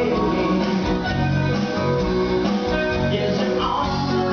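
Rock band playing loudly and steadily, with electric guitar to the fore over keyboard, bass and drums.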